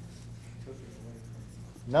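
Marker pen writing a word on a whiteboard: soft, faint strokes over a low steady hum. A man's voice starts right at the end.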